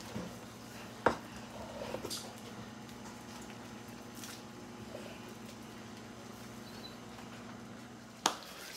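Faint soft squishing of a wooden spoon working thick plantain fufu in a pot, over a steady low electrical hum, with one sharp click about a second in.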